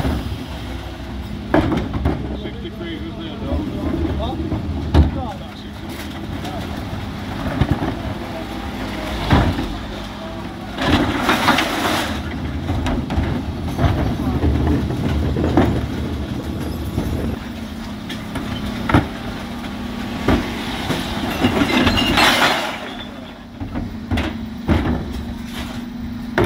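Refuse truck running at idle while its rear Terberg electric bin lift tips wheelie bins into the hopper, with sharp knocks and clatter throughout as plastic containers, glass, tins and cartons drop in. Two longer, louder noisy spells come about eleven and twenty-two seconds in.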